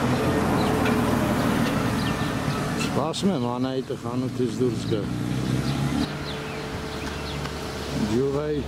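Street traffic: a car passing with a steady low engine hum, and a person's voice talking briefly in the middle.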